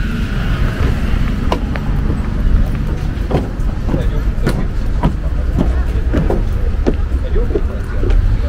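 Footsteps on a wooden deck, a scatter of irregular clicks over a steady low rumble, with snatches of voices.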